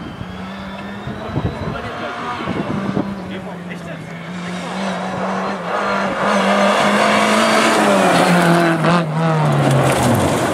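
Rally car engine held at high revs as the car approaches on a gravel stage, growing louder over the second half, with its pitch falling near the end as it comes past.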